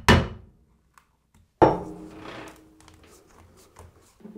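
Two sharp knocks of hand tools on a teak trim strip as it is pried at: one at the start and a second about one and a half seconds in that rings on briefly.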